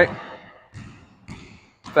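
A basketball bouncing a few times on a gym floor, as separate short thuds about half a second apart.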